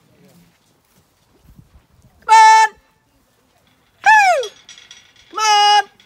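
A woman's high-pitched calls to the sheep: a held note about two seconds in, a call falling in pitch about four seconds in, and another held note near the end.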